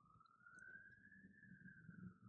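Near silence: room tone, with a very faint tone that rises slowly and falls back.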